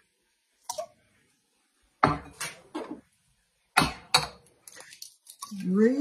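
Eggs being cracked by hand: a few sharp taps and clinks of eggshell against a small dish, in two groups about two seconds apart. A short rising voice sound comes near the end.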